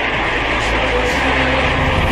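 Audience applauding, a steady dense clatter heard thin and tinny as in an old archival recording.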